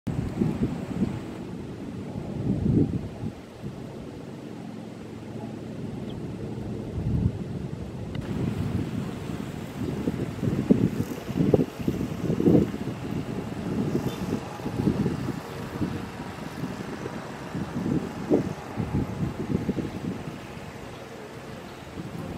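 Wind buffeting the microphone in irregular low gusts, with a faint steady hiss higher up from about eight seconds in.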